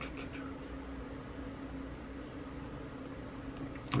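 Low steady hum with a faint even hiss: quiet room tone with no distinct event.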